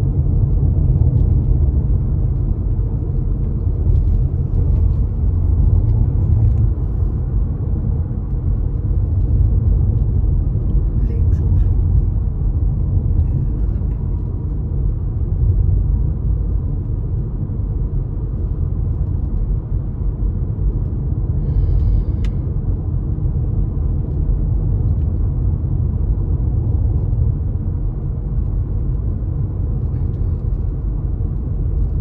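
Steady low rumble of road and engine noise heard from inside a moving car's cabin. A brief high-pitched sound comes about two-thirds of the way through.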